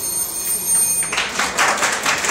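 A high-pitched, steady ringing cuts off about a second in, just as audience applause breaks out and carries on.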